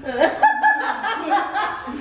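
A person laughing.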